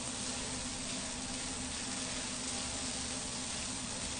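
Corn kernels frying in a hot skillet, a steady sizzle, over a low steady hum.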